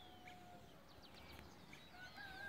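Faint rural outdoor ambience with distant birds chirping: scattered short, falling chirps and clicks. A faint held note fades out within the first second.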